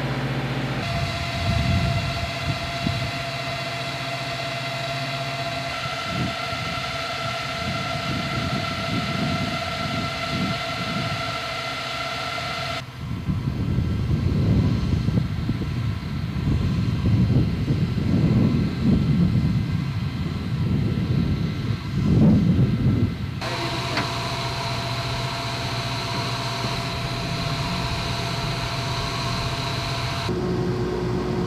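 Field generators for the drone ground control shelters running with a steady machine hum and whine. For about ten seconds in the middle it gives way to gusty wind buffeting the microphone, then the steady hum returns.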